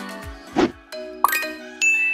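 Edited-in sound effects: a short whoosh about half a second in, then a quick rising chirp and bright chime dings that ring on as a held chord, with a second high ding near the end.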